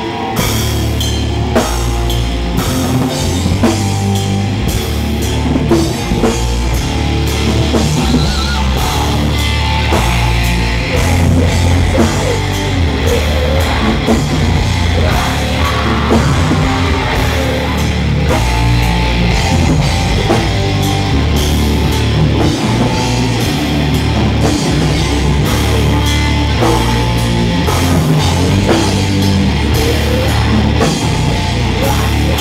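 Heavy metal band playing live, with a drum kit pounding under distorted electric guitars and bass. The heavy low end of drums and bass comes in right at the start and keeps driving throughout.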